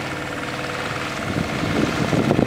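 A sailboat's motor running steadily at a constant speed, pushing the boat through calm water. About a second in, a rushing noise builds up over it.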